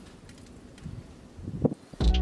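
Outdoor background noise with a low rumble of wind on the microphone, and a short faint rising sound just before the end.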